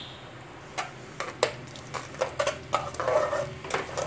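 Metal spoon clinking and scraping against the side of an aluminium pot while stirring tomato sauce, a run of irregular light taps starting about a second in.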